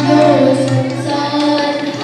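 A child singing a Hindi devotional bhajan into a microphone, with a wavering melodic line, accompanied by harmonium and tabla.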